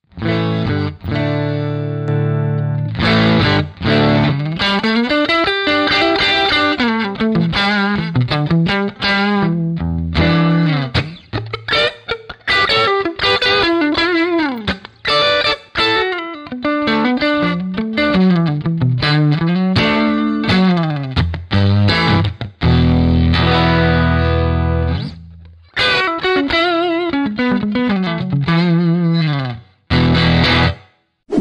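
Fender Stratocaster played through the Carl Martin PlexiRanger's Ranger side alone, a treble boost giving a pushed breakup tone. It opens with a ringing chord, then plays lead lines with string bends, with another held chord a little past two-thirds of the way.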